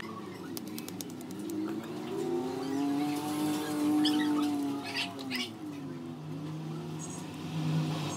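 A passing motor vehicle's engine, rising in pitch and loudness to a peak about halfway through, then falling away.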